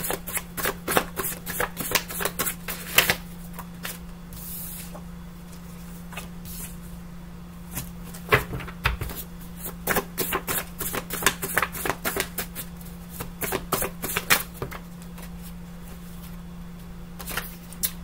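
A deck of cards being shuffled by hand: quick runs of card snaps and flutters in the first three seconds and again from about eight to fifteen seconds in. A steady low hum runs underneath.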